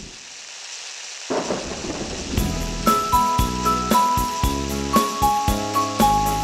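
Added intro soundtrack: a noisy rumbling rush like a storm effect swells about a second in, then about two and a half seconds in a music track starts with a steady, heavy beat and a bright melody.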